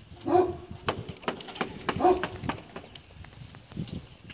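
A dog barks twice, about a second and a half apart, among scattered sharp clicks.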